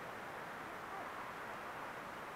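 Faint, steady rushing noise of a bicycle rolling slowly over a dirt road, heard through a helmet-mounted camera's microphone as tyre and air noise.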